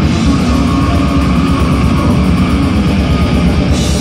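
Live grindcore band playing loud: distorted electric guitar over a drum kit, with no pause.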